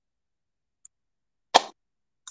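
Near silence broken by one short, sharp knock about one and a half seconds in.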